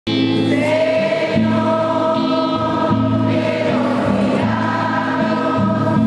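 A choir singing, holding long chords that change about every second.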